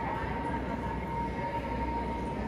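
Steady indoor hum: a constant low drone with a single steady high tone running through it, unchanging throughout.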